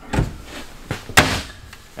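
Kitchen cabinet doors being shut and opened: a soft knock just after the start and a sharper, louder knock a little over a second in.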